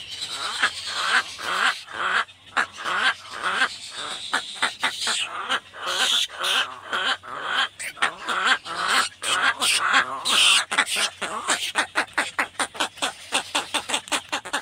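Egret chicks begging for food from the adult at the nest: a continuous chatter of rapid, harsh clicking calls that comes faster near the end.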